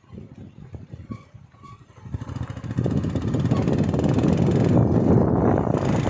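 Road vehicle on the move: faint, quiet knocks, then about two seconds in a loud, dense, steady rush of engine and wind noise comes up and holds.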